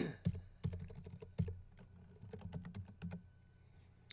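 Computer keyboard typing: keystrokes deleting and retyping the text of an entry field, in an irregular run of clicks that is dense for about a second and a half, then sparser.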